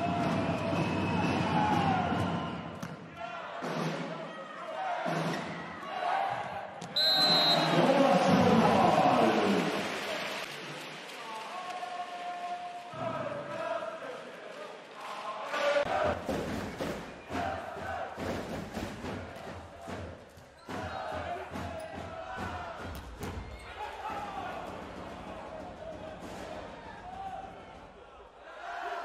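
Volleyball match in an arena: crowd chanting and cheering, a brief referee's whistle about seven seconds in, then a rally with repeated sharp hits of the ball on hands and arms (serve, spikes and digs) over steady crowd noise.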